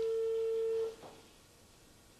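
Telephone ringback tone: one steady low beep about a second long that cuts off, the sign that the number dialled is ringing and not yet answered.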